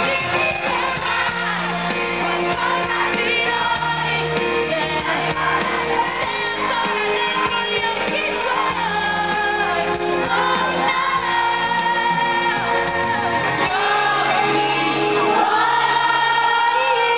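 A pop song performed live: a woman sings into a microphone over a full band, the voice gliding and holding notes over steady bass and keyboards.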